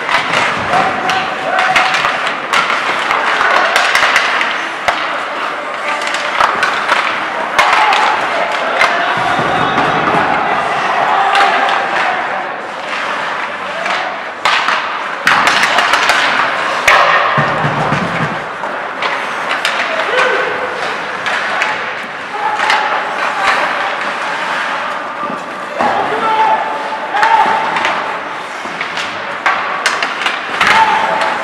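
Ice hockey play: skates scraping and carving on the ice, with sharp clacks of sticks and puck and thuds against the boards, and players' voices calling out now and then.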